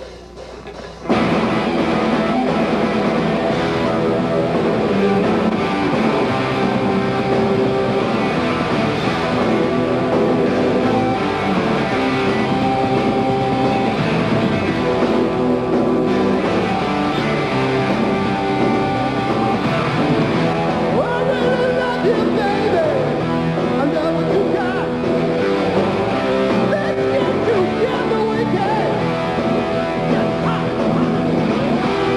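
Live hard rock band playing on a club stage: drums, electric guitars and bass come in together at full volume about a second in and play on steadily.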